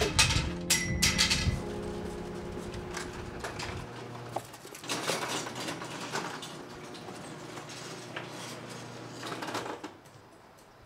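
Electric garage door opener raising a sectional garage door: a steady mechanical run with rattles and knocks from the door, stopping sharply near the end. Clattering knocks come first.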